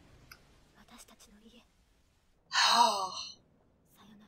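A person's single breathy sigh, falling in pitch, about two and a half seconds in.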